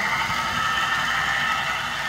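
Electric model train running along the layout track: a steady whir with no break.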